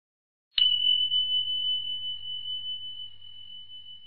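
A single bell-like ding sound effect, struck about half a second in and ringing on one high tone that slowly fades. It is the quiz's signal that time to answer is up.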